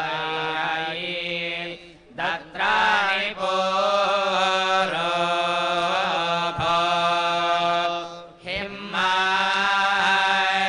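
Vedic priests chanting a Veda recitation (Veda parayanam) on a steady held pitch, pausing for breath about two seconds in and again just past eight seconds.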